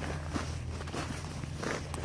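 Footsteps crunching in snow: a few soft, irregular steps over a low steady rumble.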